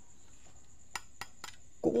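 Three light taps on the metal housing of a Philips LED lamp, short sharp clicks about a quarter second apart starting about a second in. The lamp is being tapped to show that its body is all metal.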